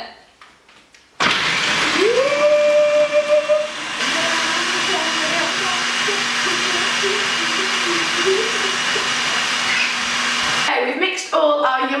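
Russell Hobbs food processor switched on, its motor whine rising as it spins up and then running steadily while the blade chops dates and macadamia nuts into a sticky truffle mix. Its note drops about four seconds in, and it cuts off suddenly near the end.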